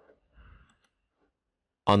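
A faint, short computer mouse click or two, then a synthesized narrator's voice starts speaking near the end.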